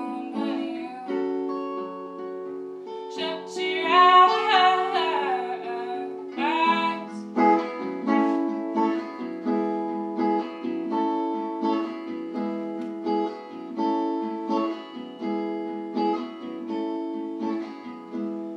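A woman singing over a picked guitar. Her voice comes in about three seconds in and drops out by about seven seconds; after that the guitar plays alone in a steady run of picked notes.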